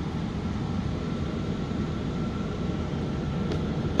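Steady low rumble of forced-air HVAC equipment running in heating mode for one zone, with a faint steady whine above it.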